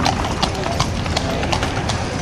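A carriage horse's hooves clip-clopping on cobblestones as it pulls a horse-drawn carriage past, about three sharp hoof strikes a second.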